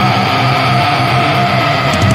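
Loud heavy metal music: dense distorted electric guitars with a held high note sliding slowly down in pitch.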